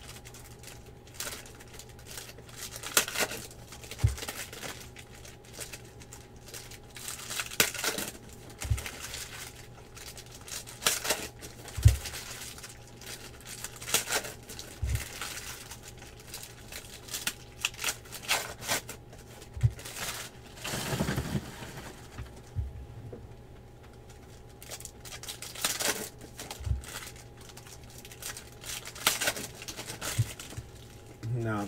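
Trading-card pack wrappers being torn open and crinkled while the cards are handled, in irregular crackles and rips, with a few brief low thumps, the loudest about twelve seconds in.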